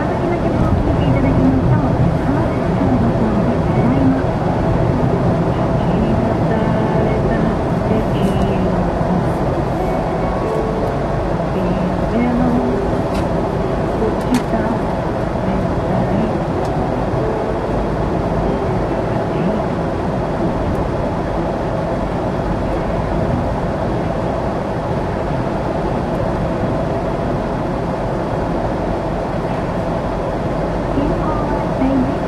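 Steady road and engine noise heard from inside a car's cabin while cruising at an even highway speed.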